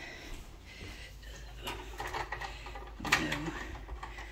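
A few soft knocks and rustles in a small room, with a brief murmured voice sound a little after three seconds in.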